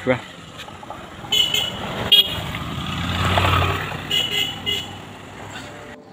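A motorcycle comes up and passes by; its engine grows louder to a peak about halfway through and then fades. Short horn beeps sound in three groups: once about a second in, again a moment later, and a few more near the middle.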